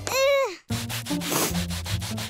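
A rapid, rhythmic rubbing or scrubbing sound effect over background music. Just before it comes a short pitched sliding cry.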